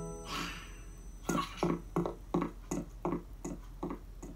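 Children's-video soundtrack effects: a brief swish, then a run of about eight short, evenly spaced bouncy notes, roughly three a second.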